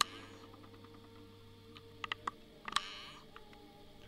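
Quiet room tone with a steady low hum, broken by a few sharp clicks: one at the start, a quick cluster about two seconds in, and another a little before three seconds followed by a brief rustling hiss.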